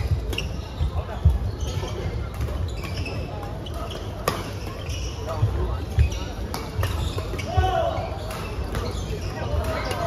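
Badminton rackets smacking the shuttlecock at irregular intervals across several courts, with a background of voices in a large sports hall.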